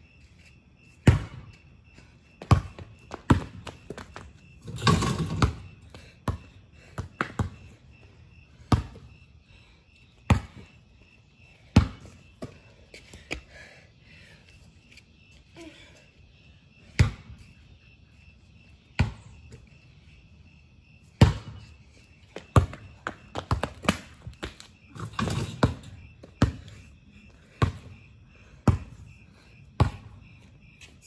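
A basketball bouncing on a concrete driveway, single sharp bounces at irregular intervals. About five seconds in, and again near twenty-five seconds, there is a longer clatter lasting about a second.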